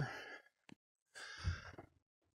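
A man breathing out audibly, a soft sigh-like exhale between phrases, just after a brief click.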